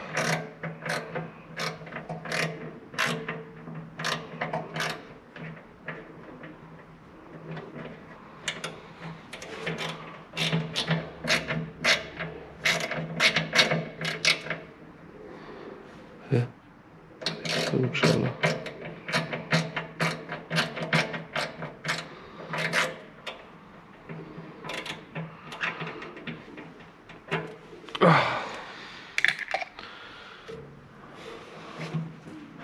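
Hand ratchet clicking in short bursts as a bolt is worked under an excavator, with a steady low hum underneath. A single loud scrape comes near the end.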